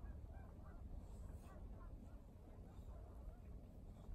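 Faint, quick series of short honk-like calls, several a second, over a low rumble.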